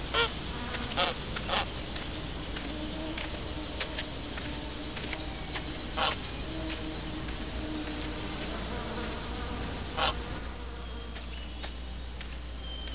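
An insect buzzing, heard in short passes about a second in, at six seconds and near ten seconds, with a fainter steady drone in between, over a constant high hiss.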